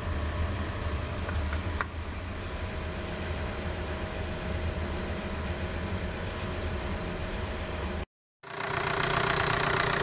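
Engine idling with a steady low rumble. The sound cuts out for a moment near the end and comes back with more mid-range clatter as the VW ALH 1.9 TDI diesel idles.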